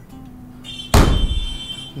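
Quiet quiz background music, then about a second in a loud thump of a hand slapping a tabletop quiz buzzer button, followed by a high ringing tone that fades away.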